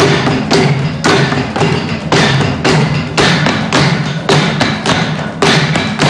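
Chendas, the cylindrical wooden drums of Kerala, beaten with sticks in a fast continuous roll, with stronger strokes about twice a second.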